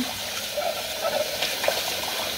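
Tap water running steadily into a kitchen sink during hand dishwashing, with a couple of light knocks of dishes about a second and a half in.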